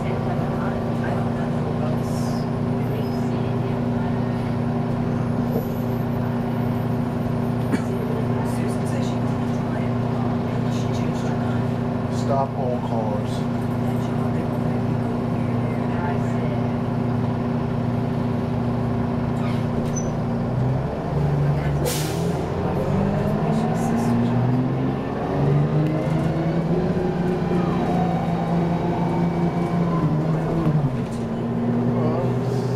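Detroit Diesel 6V92 two-stroke V6 diesel of a 1991 Orion I bus heard from inside the passenger cabin, running with a steady drone for most of the stretch. About two-thirds of the way through, its pitch dips and then climbs again in steps as the engine pulls harder, with a short hiss near the start of the climb.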